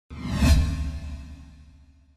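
A whoosh sound effect with a deep rumbling boom that hits about half a second in, then dies away over the next second and a half.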